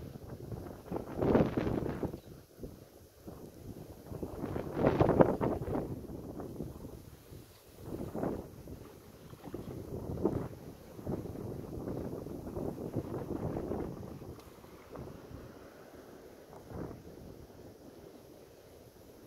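Wind buffeting the microphone in irregular gusts, the strongest about a second in and about five seconds in, with smaller gusts after.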